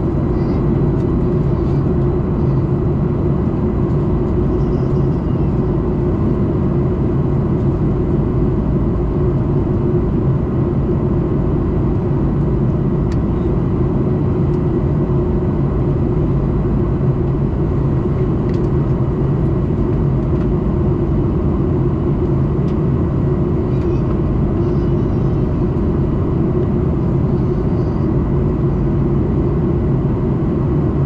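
Steady in-flight cabin noise of a Boeing 737-800 heard from a window seat beside the wing: the deep drone of its CFM56-7B turbofan engines and the rush of airflow past the fuselage, with a faint steady high whine.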